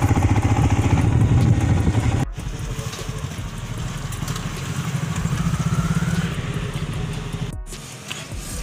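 Motorcycle engine running at low revs, a loud, evenly pulsing low note, until it cuts off sharply about two seconds in. Then a quieter steady low hum with a faint rising whine while petrol is pumped into the motorcycle's tank.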